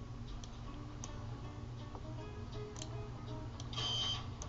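Scattered light clicks of a computer mouse over a low steady hum, with faint music playing a few soft notes in the background.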